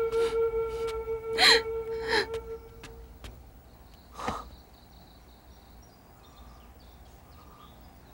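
A flute holds one long note that fades out about three seconds in, with a few sharp gasping breaths over it. Another short breath comes about four seconds in, then it is quiet.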